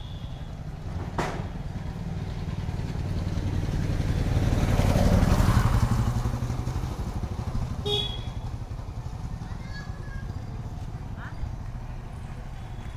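A motorcycle passing close by, its low engine note growing louder to a peak around the middle and then fading away.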